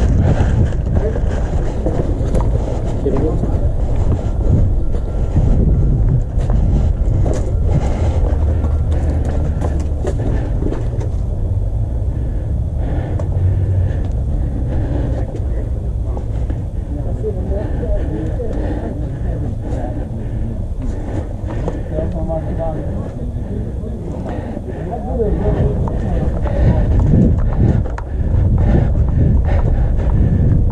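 Low, continuous rumble of wind and body movement on a body-worn action camera's microphone as the wearer moves on foot, with faint, indistinct voices in the background.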